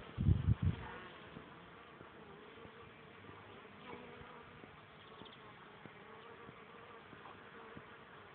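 Flying insects buzzing steadily and faintly, after a few low thumps in the first second.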